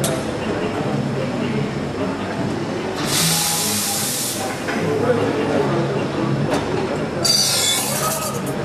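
Espresso machine steam wand hissing in two blasts, one about three seconds in lasting over a second and another near the end, over steady café chatter and machine noise.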